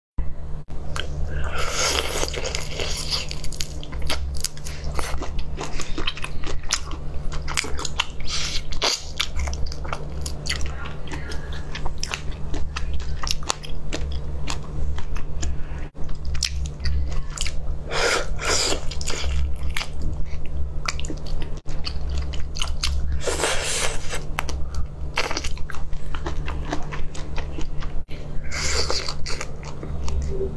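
Close-up chewing and biting of marinated shrimp: wet clicks and smacks throughout, with several louder bursts of crunching, over a steady low hum.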